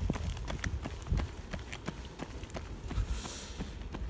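Running footsteps on an asphalt road, an even patter of about three to four steps a second.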